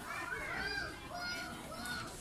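Children's high-pitched voices calling and chattering, without clear words.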